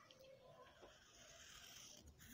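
Very faint scratching of a colored pencil drawing a letter on paper, barely above near silence.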